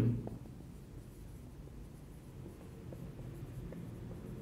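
Faint scratching of a marker writing on a whiteboard, in short strokes over a low room hum.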